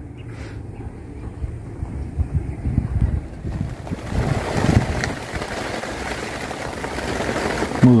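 Steady rain hissing down on muddy ground, heard from under a tarp canopy; it comes in about three and a half seconds in, after a low rumble.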